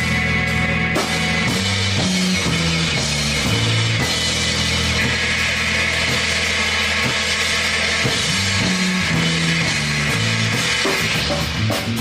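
Live rock band playing loud, with an electric bass line stepping between notes under a drum kit and ringing cymbals.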